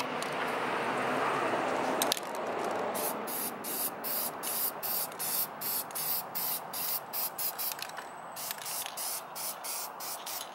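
Aerosol can of Rust-Oleum high-heat spray paint hissing as it lays a first coat on a metal bracket: one continuous spray of about two seconds, then a run of short bursts, about two a second.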